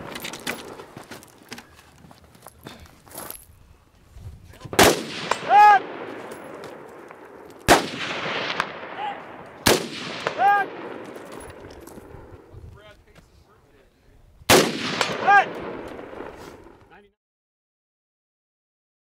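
Four semi-automatic rifle shots from an AR-15-type carbine, spaced a few seconds apart, each echoing across the canyon. About a second after three of them, a steel target rings from the hit. The sound cuts off suddenly near the end.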